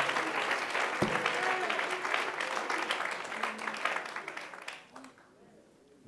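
A church congregation applauding, with scattered voices calling out. The clapping dies away over about four seconds to near quiet.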